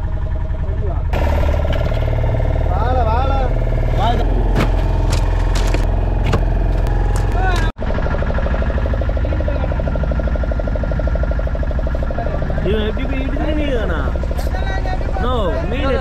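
Fishing boat's engine running steadily with a low, even hum, and men's voices talking over it. The sound breaks off for an instant about halfway through.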